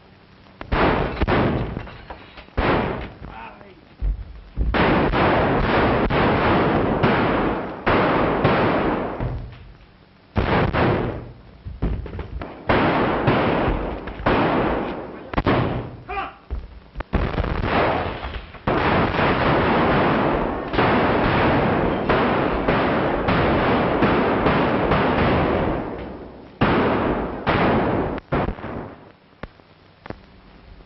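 Battle sounds on an old film soundtrack: volleys of gunfire and explosions, coming in loud spells of a second or more that die away, with short lulls between.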